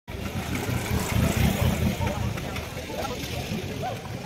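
A road vehicle's engine passing close by, its low rumble swelling about a second in and then easing off, with faint voices in the background.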